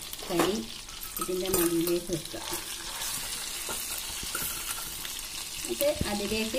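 Pieces of marinated tandoori chicken sizzling as they fry in a nonstick pan, a steady hiss. A voice sounds briefly in the first couple of seconds.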